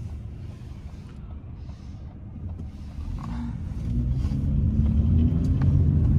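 Car engine and road rumble heard from inside the cabin as the car pulls away from a stop and speeds up, the engine note rising and growing louder from about three seconds in.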